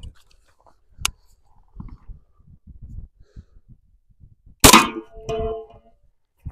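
A Kel-Tec Sub2000 carbine fired once about four and a half seconds in: a single sharp report with a ringing tail of about a second. A sharp click comes about a second in.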